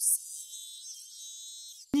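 A sung bolero vocal heard through a Renaissance DeEsser's audition of the band it works on: only the thin, hissy top of the voice comes through, with a bright sibilant burst at the start. The full voice cuts back in just before the end.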